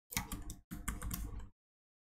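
Computer keyboard keys being pressed in two short runs, the first about half a second long and the second nearly a second, as code is edited.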